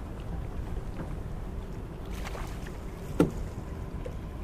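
Steady low wind and water noise aboard a small fishing boat drifting on the river, with a faint steady hum. A single sharp knock about three seconds in.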